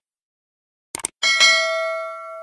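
Sound effect of a subscribe-button animation: a quick double mouse click about a second in, then a bright bell ding that rings on and fades away.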